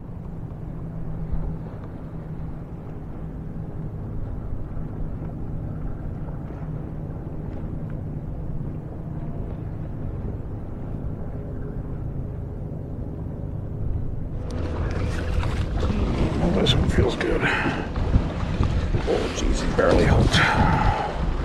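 Steady low drone of a distant motorboat engine over the water, with wind on the microphone. About fourteen seconds in, louder splashing and knocking of choppy wake water against the kayak takes over.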